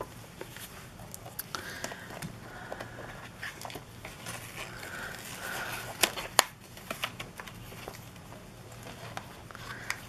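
Paper notebook inserts being handled and slid into a leather notebook cover: soft rustling and crinkling with scattered small clicks and taps, the loudest a pair of sharp ticks about six seconds in.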